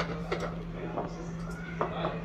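A few light knocks as cubes of cheese are dropped one at a time into a food processor's plastic bowl, over a steady low hum.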